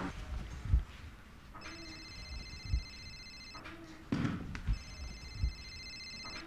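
Mobile phone ringing: two electronic rings of about two seconds each with a short gap, the second cut short, with a few low thumps between them.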